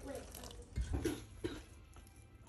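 Water pouring from a glass measuring cup into flour in a glass mixing bowl while a hand mixes it in.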